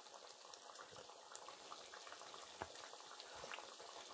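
Faint bubbling and small pops from a pot of just-boiled chicken and vegetable stew, still simmering in its own heat after the hob has been switched off.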